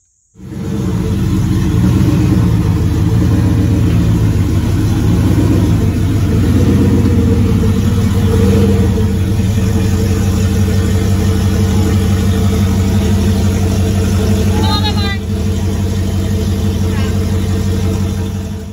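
A vehicle engine running loudly and steadily at an even speed, cutting in suddenly at the start, with a short high chirp about 15 seconds in.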